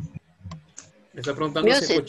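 A few quiet computer-keyboard clicks in a pause between voices, then speech resumes a little over a second in.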